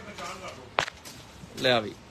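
A single sharp snap about a second in, the crack of the cotton suit's fabric being flicked out as it is held up and let down onto the counter.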